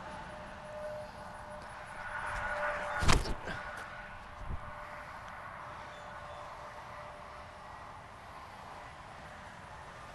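A disc golf drive thrown with a Lucid Raider distance driver: a rustle builds over about a second as the thrower runs up, then one sharp snap as the disc is ripped from the hand about three seconds in, followed by a couple of fainter knocks.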